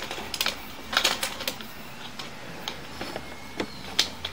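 Sewer inspection camera's push cable being fed down the line: irregular clicks and knocks, bunched in the first second and a half and sparser after, over a low steady hum.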